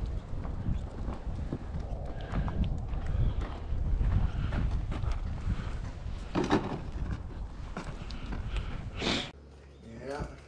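Wind buffeting the microphone in a low, uneven rumble, with scattered small knocks and crunches as smelts are picked up off the ice and put into a bucket. The two loudest knocks come about six and a half and nine seconds in. Just before the end the rumble cuts off to quiet indoor room tone.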